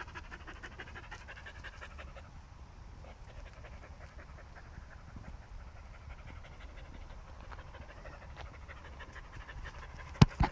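A dog panting steadily, quite faint.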